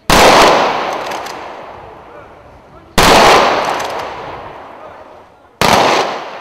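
A squad of soldiers firing a rifle salute into the air: three sharp volleys, about three seconds apart, the last coming a little sooner, each ringing out with a long echo that fades away.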